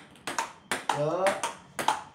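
Table tennis rally: a ping-pong ball clicking off rubber paddles and bouncing on the table, a steady run of sharp clicks a few times a second.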